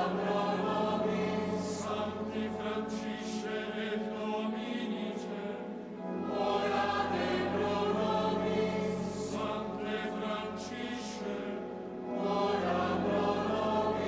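Choir singing a liturgical chant of the Mass, in phrases about six seconds long, over a steady low held note.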